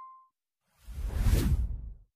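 A ringing ding from the intro's bell-click fades out at the start. About a second in, an editing whoosh sound effect with a deep rumble swells up, then cuts off suddenly at the end.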